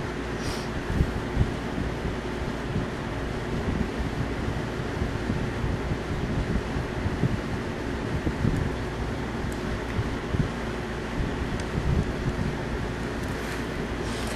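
Steady fan-like background noise: an even hiss and low rumble with a faint constant hum, and small irregular low bumps.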